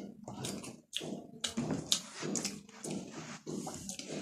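Chewing and lip-smacking of a person eating rice and curry with her hand: an irregular string of short smacks and clicks.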